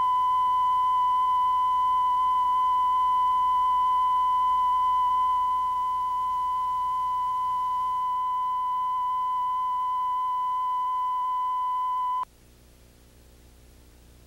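Television line-up test tone sounding with colour bars: one steady, pure, high tone that cuts off suddenly about twelve seconds in, leaving only a faint hiss.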